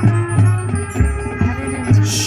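High school marching band playing: sustained brass chords over a low bass line, with drum strokes about three a second.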